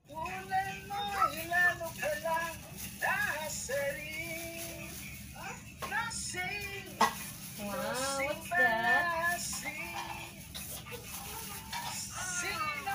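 Quiet singing in a high voice, carrying a wavering tune, with a sharp click about seven seconds in.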